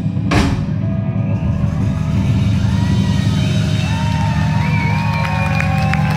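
Live rock band of electric guitars, bass and drum kit ending a song: a final cymbal crash shortly after the start, then a held low chord left ringing while the audience begins to cheer.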